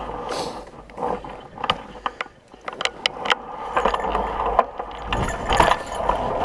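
Fat bike ridden over a rocky, icy water crossing: irregular clicks and knocks from the bike and its tyres going over stones, with a heavier low rumble near the end.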